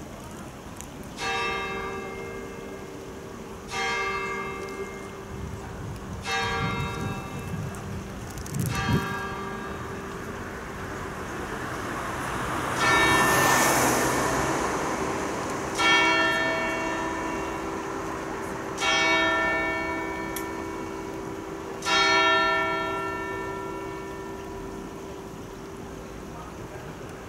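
Church tower bells striking: four strokes on a higher bell about two and a half seconds apart, then four strokes on a deeper bell about three seconds apart, each left to ring out. A car drives past during the fifth stroke.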